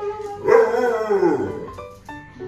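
An Alaskan Malamute howling: one long call about half a second in, falling in pitch as it fades, over background music.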